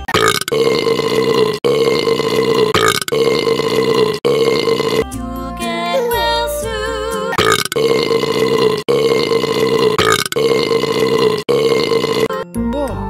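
Long burps at a steady pitch, each a second or so, strung one after another with short breaks to stand in for the sung lyrics of a children's song, over its backing music. Around the middle the burps give way for about two seconds to the plain song music, then start again.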